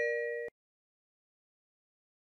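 The dying tail of a two-note electronic ding-dong chime, its higher then lower bell tone ringing out and cut off abruptly about half a second in, followed by complete silence.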